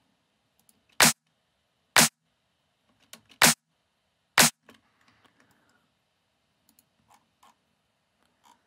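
Electronic drum-machine-style clap sample loop played back in a DAW: four sharp clap hits, unevenly spaced about a second apart. The claps are not fitting to the tempo.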